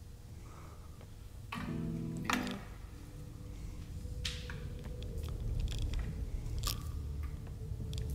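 Quiet, sparse intro soundtrack of a music video: a low rumble with scattered crunching clicks. A brief pitched groan comes about a second and a half in, and a faint held tone follows.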